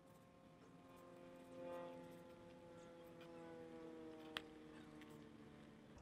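Near silence, with a faint distant engine drone that holds one pitch and slowly sinks. A single short click comes a little past four seconds in.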